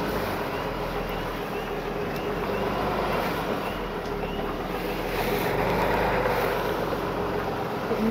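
Tow truck engine running steadily under load as the truck creeps up a steep driveway in four-wheel drive, a low steady drone with road and wind noise, swelling slightly about five seconds in.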